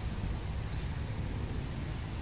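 Steady low rumble of outdoor background noise, with a faint brief rustle about a second in.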